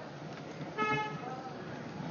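A single short horn toot about a second in, one steady note, heard over a low, even background noise.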